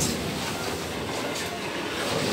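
Elevator's stainless-steel sliding doors rolling shut, a steady rumble with a knock at the start and a few faint clicks.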